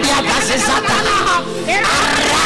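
A man's voice praying aloud through a microphone, with background church music playing under it.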